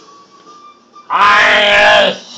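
A man's voice holding a loud, drawn-out note, starting about a second in and cutting off sharply. Before it there is a quieter stretch with a faint thin whine.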